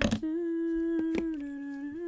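A person humming a long held note that drops a step in pitch partway through and climbs back near the end, with two light clicks about a second in.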